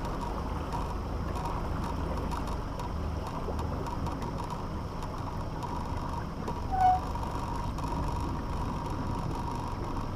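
Steady low hum and rushing noise of a small fishing boat moving on calm water, with a faint steady whine. There is a short high squeak about seven seconds in.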